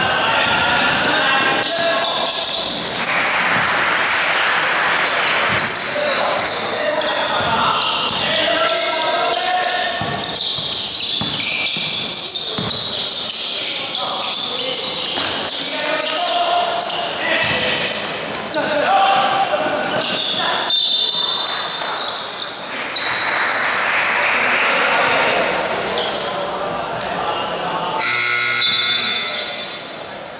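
A basketball bouncing on a gym court amid the overlapping voices of players and spectators, all echoing in a large hall, with two stretches of louder crowd noise.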